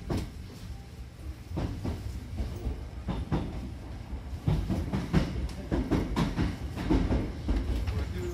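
Hankyu Kobe Line train heard from inside the car as it pulls out of a station and gathers speed: a low running rumble with wheel clacks over the rail joints, coming quicker and louder as it speeds up.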